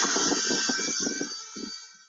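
A small fixed-wing drone's electric motor and propeller whining steadily at high pitch, with wind buffeting the microphone, fading away toward the end.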